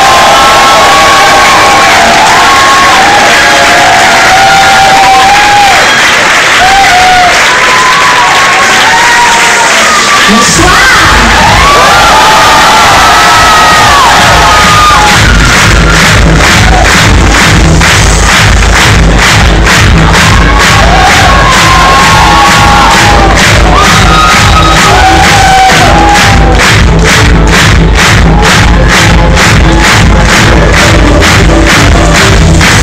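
Concert crowd screaming and cheering. About ten seconds in, a pulsing electronic dance beat starts over the PA at roughly two beats a second, and the crowd keeps shouting over it.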